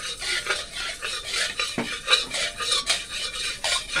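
A metal spatula scraping and sweeping around the inside of a metal wok in quick, repeated strokes, spreading a little oil over the pan.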